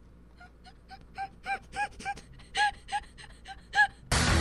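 A woman's wheezing, near-silent laughter: a run of short, high-pitched squeaky gasps, about four a second, growing louder towards the end.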